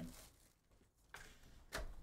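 Cardboard trading-card hobby box handled and its lid flipped open: a brief rustle about a second in, then a sharp click near the end as the lid comes free.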